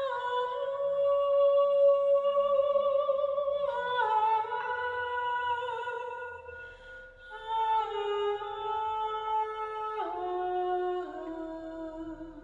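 A woman singing wordless, improvised vocal lines in long held notes that step downward in pitch, with a hanging cylindrical wind chime ringing steadily beneath her voice.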